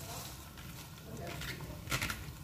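Chopped savoy cabbage being tipped from a plastic colander into a pot of hot broth, a soft rustle of leaves over the low noise of the pot, with one sharp knock near the end.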